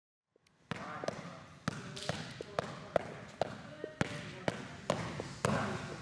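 A basketball being dribbled on a hard gym floor, bouncing about twice a second with a ringing echo after each bounce, starting just under a second in.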